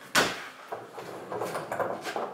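A knock, then scraping and rustling as a small plastic-wrapped 12-volt compressor fridge is turned around on a table.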